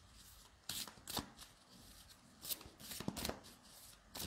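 A thick deck of large cards being shuffled overhand by hand: a few short, irregular papery slides and flicks as packets of cards are dropped from one hand to the other.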